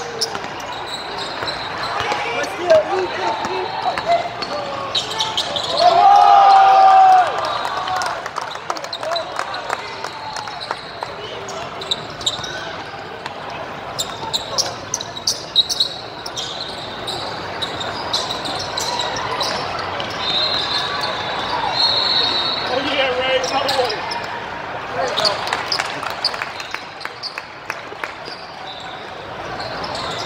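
Basketballs bouncing on a hardwood-style indoor court with repeated dribbles and sneakers squeaking, amid voices of players and onlookers, all echoing in a large hall. One loud, held sound stands out about six seconds in.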